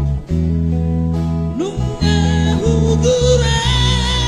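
Live band playing a Batak pop song, acoustic and electric guitars over steady held chords. Male voices sing, the vocal line sliding in about one and a half seconds in.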